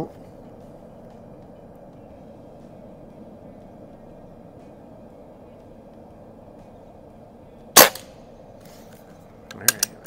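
Beeman QB Chief PCP air rifle, set to a little over 700 feet per second, firing a single shot about eight seconds in: one sharp crack with a brief tail. A few small clicks follow near the end.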